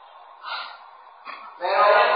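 An elderly monk's voice pausing mid-talk: a short, audible intake of breath about a quarter of the way in, then his speech resumes shortly before the end.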